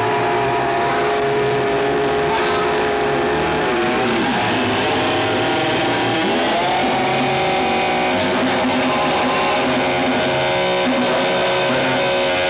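Noise-band music: a loud, dense drone of several held amplified tones that slide down and back up in pitch around the middle, over shifting low notes.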